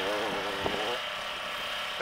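Off-road dirt bike engine running at a distance as a steady drone, with a single sharp click about two-thirds of a second in.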